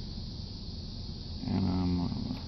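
Steady low rumble inside a car, then about one and a half seconds in a drawn-out voice sound held on one pitch begins and carries to the end.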